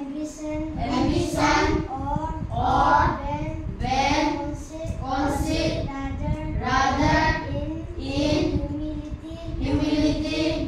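A group of children singing a song together, phrase after phrase without a break.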